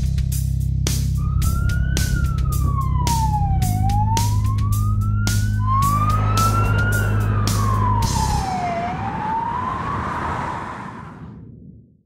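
Emergency-vehicle siren wailing, gliding slowly up and down in pitch, over intro music with a steady drum beat. The music stops about eight seconds in and the siren fades out alone near the end.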